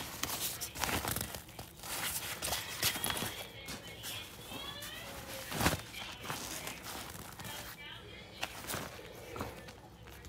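A fabric backpack being handled and turned over: rustling and scraping of the cloth and straps with scattered knocks. The sharpest knock comes a little past halfway.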